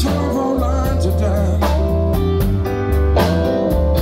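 Live blues band playing loud: electric guitar over a deep bass line and a drum kit keeping a steady beat, with a man singing into a microphone through the PA.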